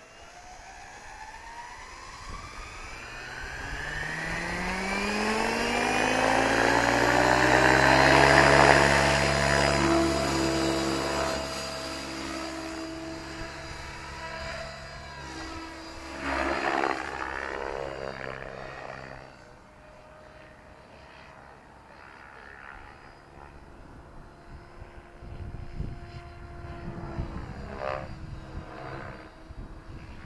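Electric RC helicopter spooling up, its motor whine and rotor pitch rising steadily over the first eight or nine seconds until it runs at full speed. After that the rotor sound holds steady with a swell midway, drops away as the helicopter flies off, and comes back in uneven swells near the end.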